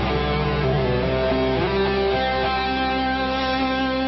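Live rock band music led by an electric guitar playing slow, sustained melodic notes.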